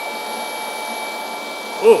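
Two cordless rotary polishers, a Harbor Freight Hercules 20V brushless and a Flex, running at their highest speed with no load, making a steady electric-motor whir with a fixed high whine.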